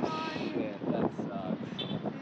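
Indistinct, low voices of people reacting, with wind buffeting the microphone.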